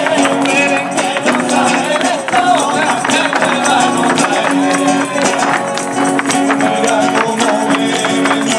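Live Andalusian Christmas folk music in flamenco style: voices singing over a steady beat of tambourine and hand percussion.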